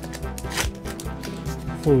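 Foil wrapper of a Pokémon TCG Darkness Ablaze booster pack crinkling and tearing as it is ripped open along its top seal, a rapid run of small crackles. Background music plays underneath.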